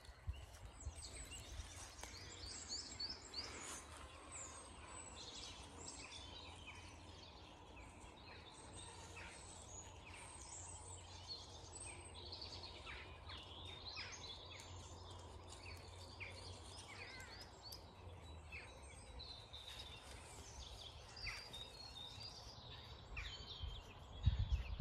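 Dawn chorus of many songbirds singing at once in early spring, a dense run of overlapping faint chirps and trills, the birds singing to hold territory as the breeding season nears. A steady low rumble lies underneath.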